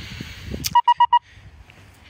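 Four quick, identical electronic warning beeps about a second in, each a short steady tone, preceded by a sharp click.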